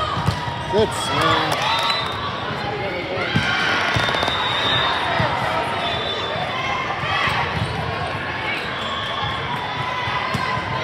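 Indoor volleyball rally: players and spectators calling out and talking throughout, with a few sharp hits of the ball, the loudest about a second in and again a little after three seconds.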